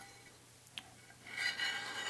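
A small piece of aluminum scraping along the edge of a freshly set hydrostone (gypsum cement) casting, shaving off the flashing while the cast is still somewhat soft. It is quiet at first, with one faint click, and the scraping starts a little past halfway.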